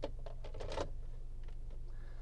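A sharp click, then a few short plastic clicks and scrapes within the first second as a cup holder insert is lifted out of a car's center console, over a steady low hum.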